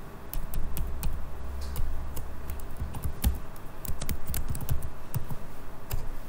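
Computer keyboard being typed on: a quick, irregular run of key clicks as a line of code is entered.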